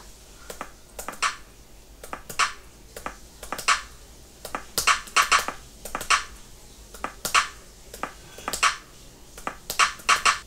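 A programmed drum beat from a software drum kit playing on a laptop: sharp, snappy hits about every 1.2 seconds with lighter clicks in between.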